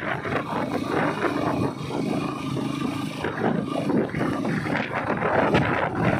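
Steady, rough roar of a vehicle travelling over a loose gravel road, with wind buffeting the microphone.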